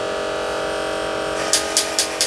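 Battery-operated tin toy robots switched on and running: a steady mechanical whirring drone, joined about one and a half seconds in by regular clicking, about four or five clicks a second.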